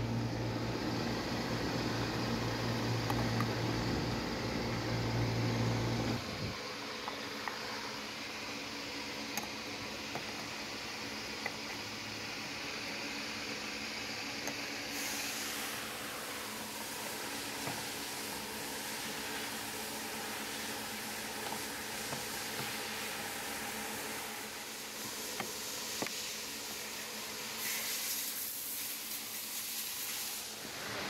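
Steady fan-like mechanical hum with an even hiss, a deeper part of the hum dropping away about six seconds in, and a few faint clicks.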